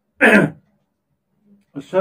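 A man clears his throat once, a short rasp, followed by a pause; speech resumes near the end.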